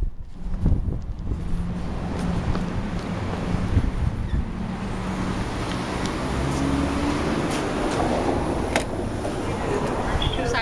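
City street traffic noise with wind rumbling on the microphone, a low engine hum running under it. A few sharp clicks come in the second half.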